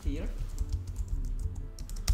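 Typing on a computer keyboard: an irregular run of quick key clicks over a steady low hum.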